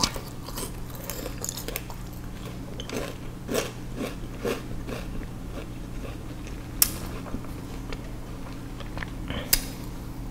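Chewing on peeled sugarcane: a run of crunchy bites and chewing of the fibrous, juicy pieces, with two sharper, louder crunches in the second half, over a low steady hum.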